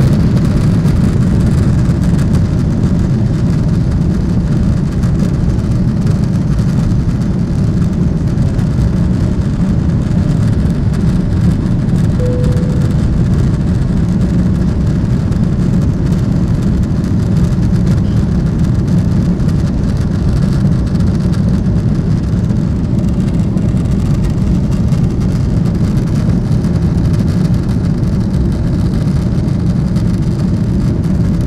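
Airliner jet engines at takeoff thrust, heard inside the cabin as a loud, steady, deep rumble while the plane leaves the runway and climbs. A short tone sounds briefly about twelve seconds in.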